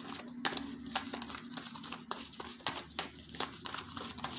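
A deck of cards being shuffled by hand: a quick, irregular run of light snaps and flicks of card edges.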